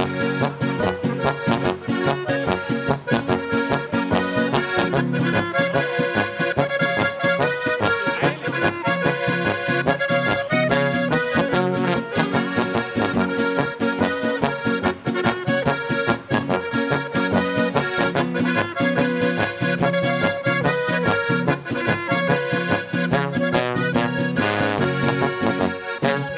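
A live folk band playing an instrumental number, with the accordion in the lead and trombone and guitar alongside.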